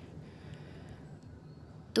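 Low, steady background hiss with two faint ticks in the middle; no clear source stands out.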